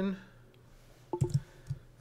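A few short clicks of computer keyboard keys being pressed, with a low room hum beneath.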